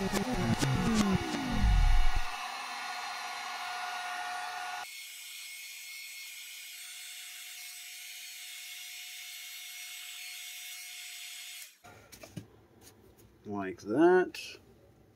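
Heat gun running on high, blowing on EVA foam: a steady airflow hiss with a thin fan whine, cutting off suddenly near the end. It opens with a loud sound falling steeply in pitch over the first two seconds.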